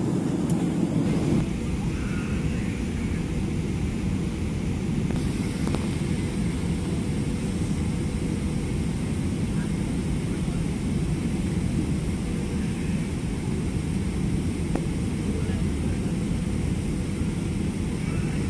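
Steady low roar of a Boeing 777-300ER's GE90 engines and rushing airflow, heard inside the passenger cabin on final approach.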